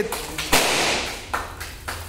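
A few scattered hand claps, with a sudden rushing burst about half a second in that fades away over a second.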